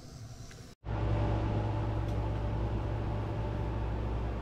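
A steady low mechanical hum of a running machine, with a few steady tones in it, starting abruptly about a second in.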